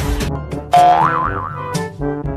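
Background music with a beat, overlaid about two-thirds of a second in by a cartoon boing-style sound effect: a tone that jumps up and wobbles up and down for about a second.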